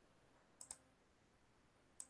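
Near silence broken by faint short clicks: a quick pair a little over half a second in and another pair at the very end.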